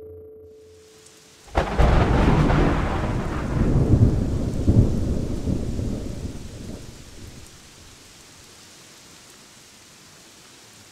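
Thunderclap about a second and a half in, rumbling for several seconds and dying away, then steady rain falling.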